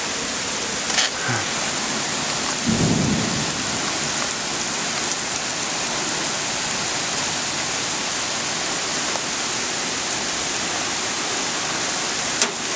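Heavy rain pouring steadily onto pavement and lawns, a dense even hiss, with a brief low rumble about three seconds in.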